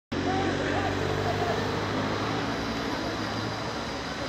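A steady low engine hum with voices of a crowd over it, a few calls in the first second or so.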